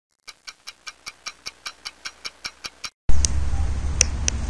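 Clock-like ticking, about five sharp evenly spaced ticks a second for nearly three seconds, stopping abruptly. About three seconds in, a much louder low rumble from the camera microphone outdoors cuts in, with a couple of small clicks.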